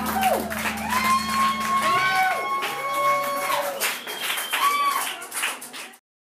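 Live band music in a club: long held, gliding melody notes over drum hits, with a steady low note that drops out about two seconds in. The music thins out near the end and cuts off abruptly.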